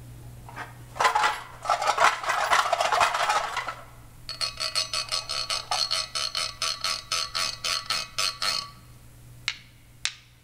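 Homemade found-object percussion instrument played by hand: a dense rattling clatter for about three seconds, then a run of rapid, evenly spaced metallic clicks, about six a second, each with a bright ringing tone, ending in a couple of single clicks.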